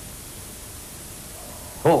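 Steady, even background hiss with no other sound in a pause of the talk; a man's voice starts up near the end.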